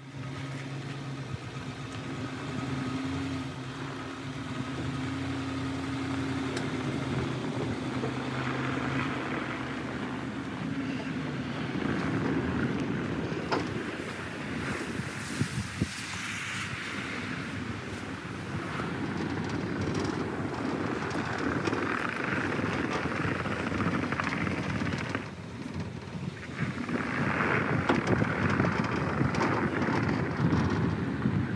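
Pickup truck towing a car trailer loaded with a car, pulling away over a snowy driveway. The engine runs with a steady hum at first, then rougher noise of tyres on packed snow and wind on the microphone takes over from about twelve seconds in.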